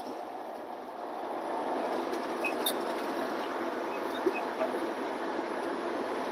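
Steady road and engine noise inside a Freightliner semi-truck's cab while it cruises at highway speed, an even drone that grows slightly louder after about a second.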